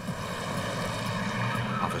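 A car driving slowly: a steady, even engine drone with no sudden sounds.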